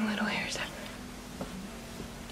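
A woman's soft, whispery voice trailing off in the first half second, then low room noise with one faint click about a second and a half in.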